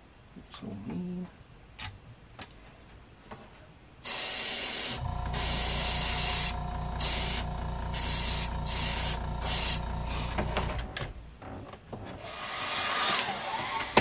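Airbrush spraying paint in a series of short hissing bursts as the trigger is worked, after a few seconds of quiet handling clicks, with a last softer spray near the end. A low steady machine hum runs under the bursts for about six seconds.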